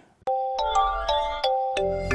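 Short musical jingle of about six struck notes that ring on, starting just after a brief silence: the news channel's outro sound logo.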